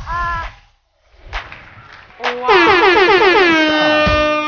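A short pitched sound, a brief gap and two clicks, then from about two seconds in a loud wailing note that quivers and slides down in pitch before settling into a long steady held tone.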